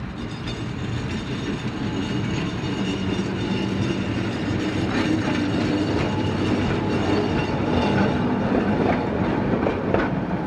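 Vintage Sydney electric freight tram (car 24s) running slowly along the track, its wheels clicking on the rails. The sound grows louder as the tram draws near.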